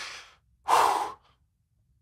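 A man breathing out heavily twice into a close microphone, the second breath a louder sigh about a second in, as he struggles with emotion.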